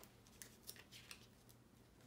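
Faint rustling and crisp flicks of thin Bible pages being turned by hand, several short ones in a row.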